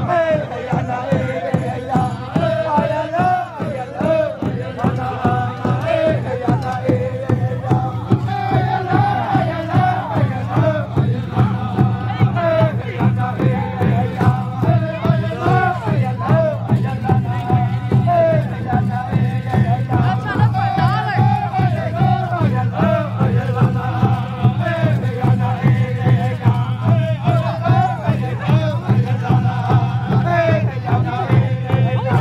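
Apache ceremonial song: voices chanting together over a quick, steady drumbeat, with crowd noise.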